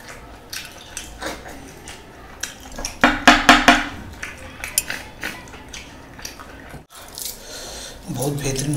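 Close-miked eating: biting and chewing meat off a bone held in the fingers, with wet mouth clicks and smacks that are loudest in a short quick run about three seconds in, and light clinks against a plate.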